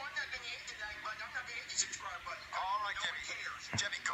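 Mostly speech: high-pitched cartoonish puppet voices played from a TV speaker and picked up in the room, with faint music beneath and a quick falling pitch sweep near the end.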